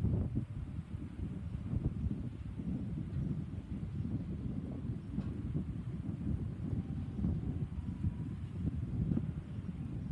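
Wind buffeting the microphone: a gusty low rumble that rises and falls throughout.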